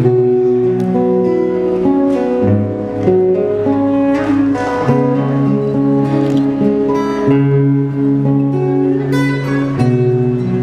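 Two acoustic guitars playing an instrumental duet: plucked melody notes over held bass notes.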